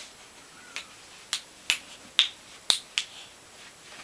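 A child's hand claps, six sharp, unevenly spaced claps in a little over two seconds, the loudest two in the middle.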